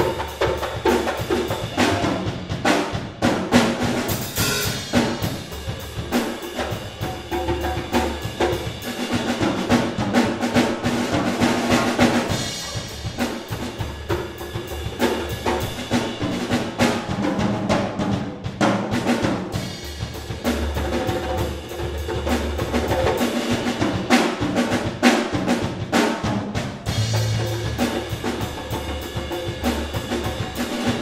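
Jazz big band playing live, with the drum kit and percussion to the fore in a steady, busy rhythm under sustained ensemble notes.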